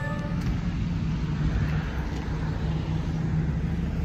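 Steady low rumble of vehicle noise, with the last of a music track cutting off in the first half-second.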